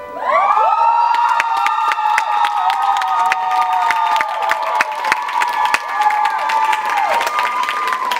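Audience cheering with many long, high-pitched screams and scattered clapping, rising as the stage music stops.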